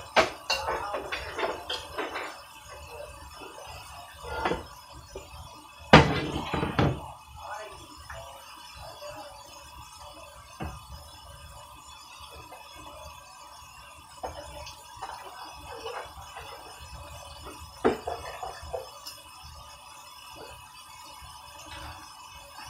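Kitchen cookware clatter: a metal stockpot and pans knocked and shifted on an electric stovetop, in scattered knocks with the loudest clatter about six seconds in. Faint music plays underneath.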